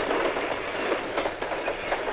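Passenger train coaches passing close by at speed, a dense rushing rumble with the steady clatter of wheels over the rails.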